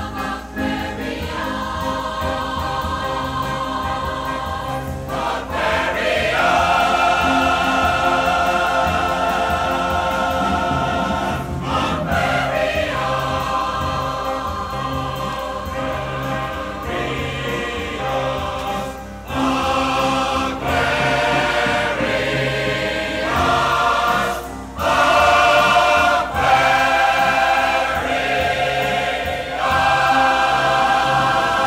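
Large mixed chorus singing held chords over a steady low bass line, live concert recording, with two brief breaks in the singing in the second half.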